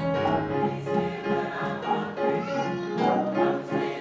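Gospel choir singing with instrumental accompaniment, held notes and one rising vocal glide a little past halfway.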